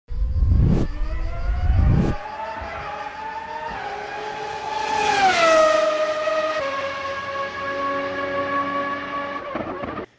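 Racing-car engine sound effect: a high engine note that glides down in pitch about five seconds in and steps lower again shortly after, as if passing and shifting. Two heavy thumps come in the first two seconds.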